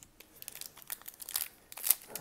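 Foil wrapper of a 2019 Panini Prizm basketball hobby pack crinkling in the hands as it is gripped and torn open, a run of irregular crackles with the loudest near the end.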